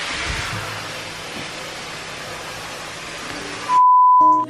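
Even TV-static hiss from an edited transition effect, cut off abruptly near the end by a loud, steady test tone of the kind played over colour bars.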